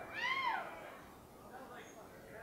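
A single high whoop from a voice, rising and then falling in pitch, lasting about half a second near the start.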